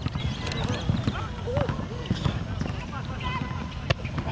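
Indistinct voices of several people talking in the background, with no clear words, over a low steady rumble; a sharp click near the end.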